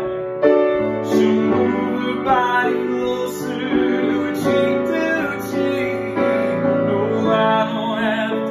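Grand piano played with full, jazzy chords, a new chord struck about every second, with a man singing along over it.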